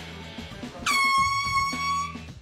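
A loud air-horn blast, one held tone that dips slightly in pitch as it starts, going off about a second in for about a second, as if set off by a man sitting down on an office chair. Background music with a steady beat runs underneath.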